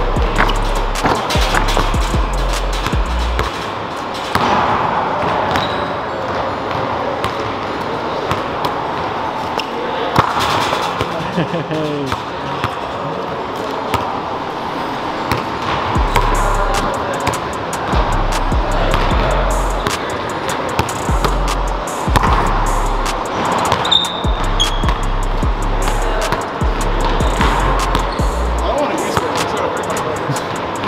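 Background music with a deep, stepping bass line and a vocal, over a basketball bouncing on a hardwood gym floor.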